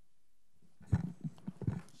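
Quiet room tone for about a second, then a short, uneven run of light taps and knocks, about half a dozen in under a second.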